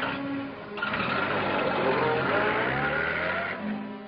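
A car engine accelerating as the car pulls away, starting about a second in and fading out shortly before the end.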